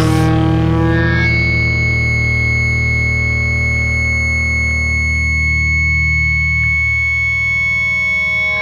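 Hardcore punk recording on a held, distorted electric guitar chord left ringing, with a steady high tone joining about a second in.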